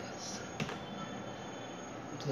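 Two computer keyboard keystrokes: a light click at the start and a sharper one about half a second later, over steady microphone hiss. They are the shortcut keys opening and closing the Rofi launcher.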